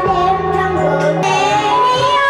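A young girl singing into a microphone, with instrumental band accompaniment under her voice.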